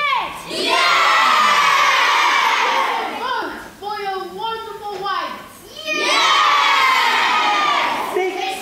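A crowd of children shouting and cheering together in two long loud shouts, with shorter calls between them.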